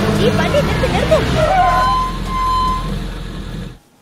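The tail of an electronic dance track running into a vehicle engine's steady low hum, with short calls from voices early on. The sound drops away suddenly just before the end.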